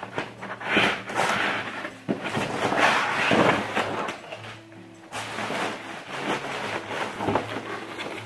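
Cardboard box and packaging rustling and scraping as a blender's motor base is pulled out of its box, over background music.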